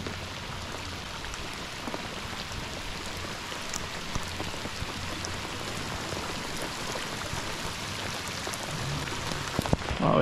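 Heavy rain pouring onto lake water and the boat: a steady, even hiss dotted with the taps of individual drops.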